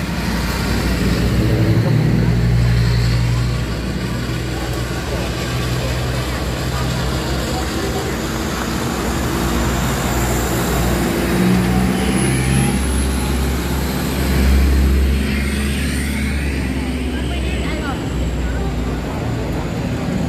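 Engines of race-prepared pickup trucks running at low speed as the cars roll past one after another, a steady low rumble that swells about fifteen seconds in.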